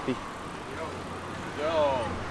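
Street traffic: a low, steady motor-vehicle engine hum builds about a second in, under short "oh" exclamations from people watching.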